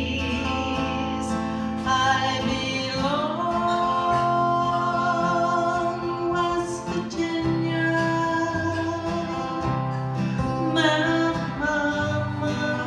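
A woman singing a slow country-folk song with long held notes, accompanying herself on a strummed acoustic guitar.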